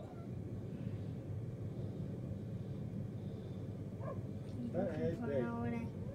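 Steady low rumble of open-air noise, then near the end a brief, drawn-out voiced call with one held note.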